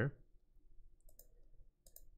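Faint computer mouse clicks, a few about a second in and another pair near the end, over quiet room tone.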